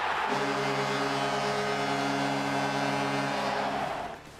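Arena crowd cheering a goal, with the goal horn sounding as one steady blast of about three seconds over the cheering.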